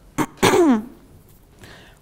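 A person clearing their throat once, a short sound about half a second in that falls in pitch, then room tone.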